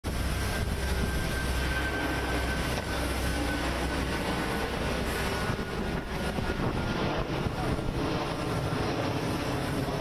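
Steady airport apron noise beside a parked airliner: a low rumble with a faint high whine through the first few seconds.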